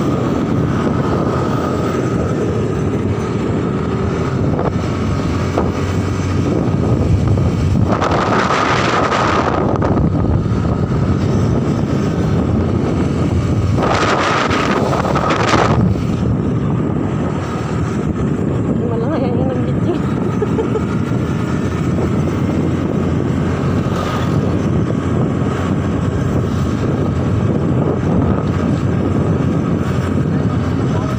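Motorcycle engine running steadily while riding, with wind noise on the microphone. Twice, around 8 and 14 seconds in, there is a louder hiss lasting about two seconds.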